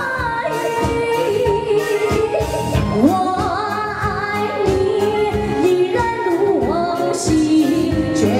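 A woman singing a Mandarin pop ballad into a microphone, amplified through a PA, with live band accompaniment.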